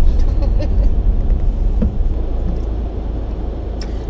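Inside a moving car's cabin: steady low engine and road rumble, with one short click near the end.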